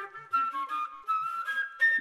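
Background music: a flute playing a melody of held notes that step up and down in pitch.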